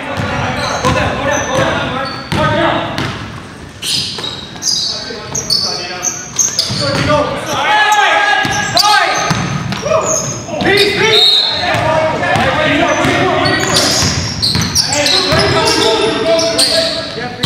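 Live sound of a basketball game in a gym: a basketball bouncing on the hardwood floor, players' voices, and many short high squeaks, all echoing in the large hall.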